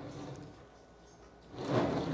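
A near-quiet pause in a small room, with a faint low murmur at first and a man's voice coming in near the end.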